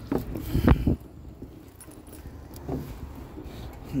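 Metal clunks and rattles from an old Springfield riding mower's body and steering wheel as it is climbed onto and handled. The loudest clunks come in the first second, followed by a few faint knocks.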